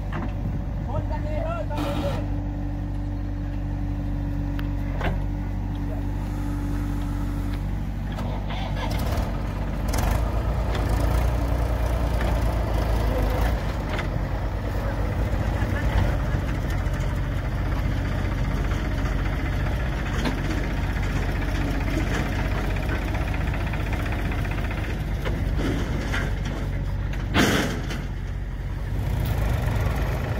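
Diesel engines of a farm tractor and a backhoe loader running steadily. The sound grows louder about a third of the way in as the tractor pulls away with its trolley loaded with soil. There is a short loud burst near the end.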